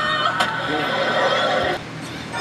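A cartoon character's voice in television promo audio, a long wavering cry that breaks off sharply near the end, with a short click about half a second in.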